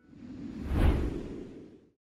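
A whoosh sound effect on an animated logo ident. It swells up to a peak under a second in, then fades away.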